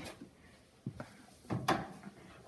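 Handling noise at an open front-loading clothes dryer as a bamboo pillow is pulled out of the stopped drum: a couple of light clicks about a second in, then a short scuff. The dryer is not running.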